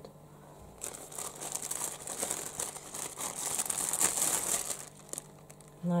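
Crisp lettuce leaves crinkling and being torn by hand. The dense crackling starts about a second in and stops shortly before the end.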